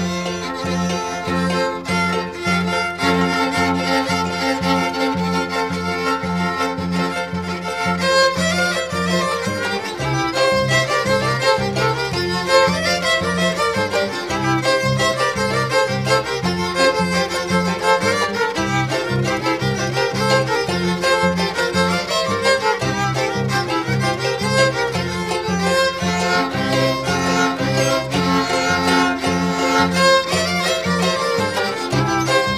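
Yoreme (Mayo) pascola son played on violin, the melody carried over a plucked-string accompaniment that beats out a steady, fast bass pulse.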